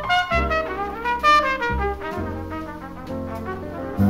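Jazz trumpet plays a fill between vocal phrases, a quick run of notes over the first two seconds and then longer held notes. Upright bass and piano accompany it in a small jazz quartet.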